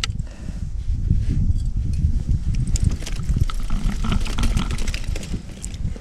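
Low, steady rumble of wind buffeting the microphone, with a few light clicks and rustles from handling as a small flathead is worked off the hook with pliers.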